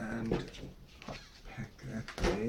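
A short pitched vocal sound near the start, followed by a few shorter, fainter ones.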